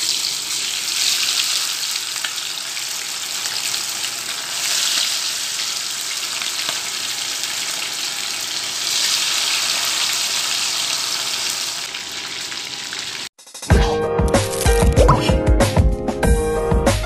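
Chicken pieces deep-frying in hot oil in a pan, a steady sizzling hiss that swells a few times. About 13 seconds in it cuts off abruptly and loud music with a strong beat starts.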